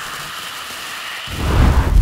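Trailer sound design: a steady rain-like hiss, then about a second and a quarter in a deep rumbling boom like thunder that swells and is loudest at the end.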